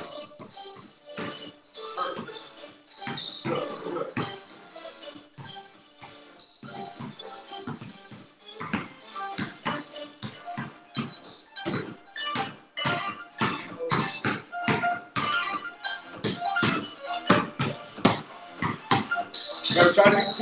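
Two basketballs dribbled on a concrete garage floor: quick, uneven bounces overlapping one another, with background music playing underneath.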